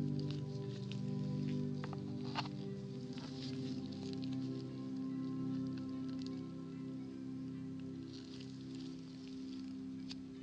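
Soft background music with sustained low tones throughout. A few faint clicks from gloved hands and a metal pick working a jelly squishy toy sound over it, the sharpest about two and a half seconds in.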